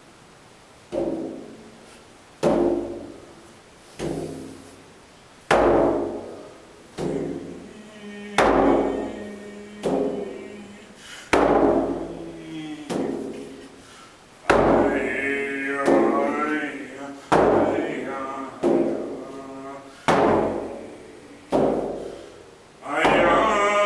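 Inuit qilaut frame drum struck with a wooden stick in a slow, even beat, about one booming, ringing stroke every second and a half. From about halfway a voice chants along with the drum.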